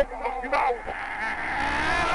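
A woman's voice rising into a loud, drawn-out scream over the second half.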